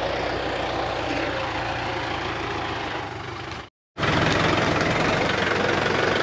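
Compact tractor's diesel engine idling steadily. The sound cuts out for a moment about three and a half seconds in, then comes back louder, with a fast knocking beat.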